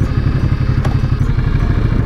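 Ducati motorcycle engine idling: a steady, rapid low pulse at low revs.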